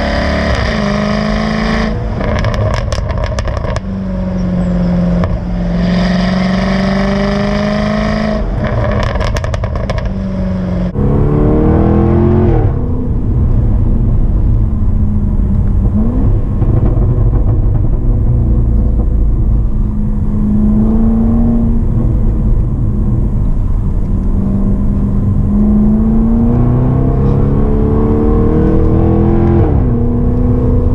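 Jaguar F-Type SVR's supercharged 5.0-litre V8 on the move. It is heard first at the quad exhaust tips, with two bursts of crackles and pops. About eleven seconds in it is heard from inside the cabin, the engine note rising in pitch as the car accelerates and dropping as it shifts up through the gears.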